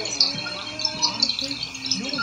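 Small birds chirping, short repeated high chirps overlapping one another.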